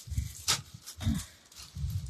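Soft handling noises as cotton trousers and a clear plastic packet are moved about: a few low thumps and a brief click about half a second in.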